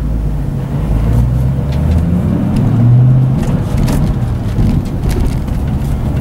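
2007 Ford Mustang GT's 4.6-litre V8 heard from inside the cabin, pulling under throttle with its note climbing to a peak about three seconds in, then dropping in pitch and settling as the driver shifts the five-speed manual.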